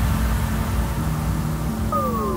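Electronic intro sound effect: a sustained low, noisy rumble with a steady droning tone, with falling tones starting near the end.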